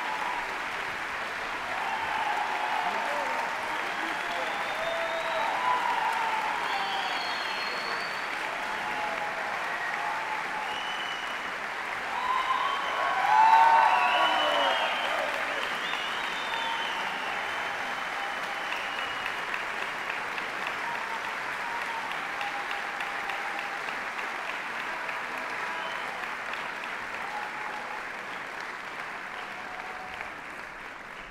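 Concert audience applauding in a large auditorium, with shouts and cheers. It swells to its loudest about halfway through, then slowly fades.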